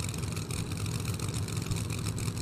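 Pro Mod drag cars' big V8 engines idling at the starting line, a steady low rumble.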